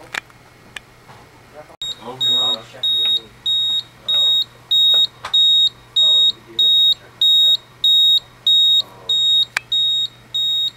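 An electronic alarm beeper in a rack power distribution unit starts about two seconds in, just after a sharp click. It gives a steady train of high-pitched beeps, about two a second.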